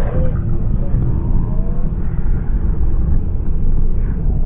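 Wind buffeting the microphone of a GoPro being whirled around on a line: a loud, uneven rumble.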